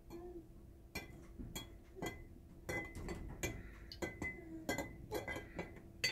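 A stirrer clinking irregularly against the inside of a glass jar of water, some taps leaving a brief glassy ring. The stirring dissolves oxalic acid crystals in the water, with clumps being pressed apart against the jar.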